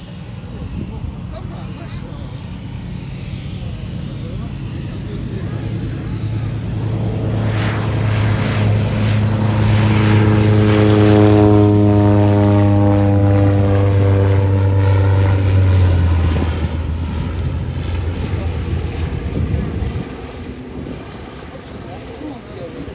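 Antonov An-2 biplane's nine-cylinder Shvetsov ASh-62IR radial engine and propeller at takeoff power, growing louder as the aircraft climbs out past. It is loudest about halfway through, its pitch falls as it goes by, it drops off suddenly about two-thirds of the way in, and then it fades as the aircraft climbs away.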